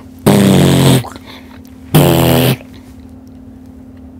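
A man imitating car-audio subwoofer bass hits with his mouth: two loud, buzzing blasts, each under a second, about a second and a half apart.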